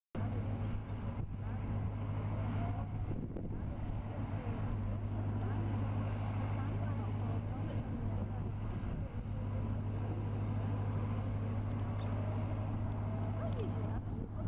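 Steady low engine hum, unchanging throughout.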